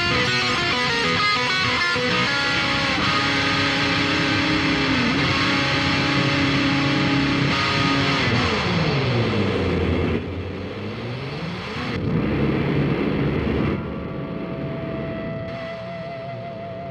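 Electric guitar played through an Eventide Rose delay and modulation pedal: dense, ringing notes, then a held chord whose pitch slides down and swings back up about two thirds of the way in. It then drops to quieter sustained notes, ending on one held note with a slight waver.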